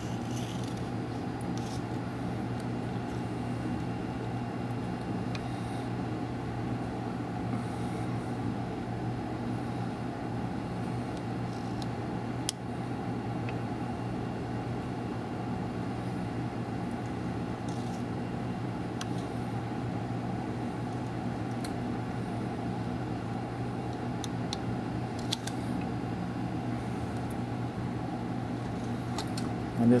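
A steady low machine hum, unchanging throughout, with a couple of faint clicks.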